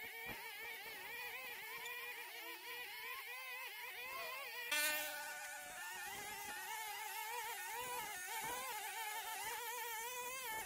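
Several brush cutters running at high speed together, their engine whines overlapping and wavering in pitch, with a short louder burst about halfway through.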